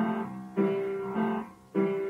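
Piano playing the instrumental lead-in to a country gospel song: chords struck about every half second, each fading, with a short break before the last one. An old reel-to-reel home recording.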